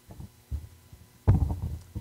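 Microphone handling noise: a few dull, low thumps and bumps, the loudest cluster a little past halfway, as hands and papers move against the table microphone.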